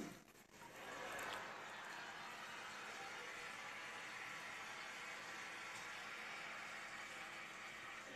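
Electric dog-grooming clippers running with a steady whir while cutting through a poodle's curly coat, coming up about a second in.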